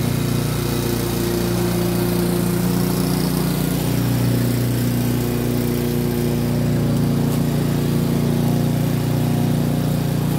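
Single-cylinder petrol engine of a 20-year-old Rover rotary lawnmower running steadily at working speed while cutting grass, a continuous even hum with no break.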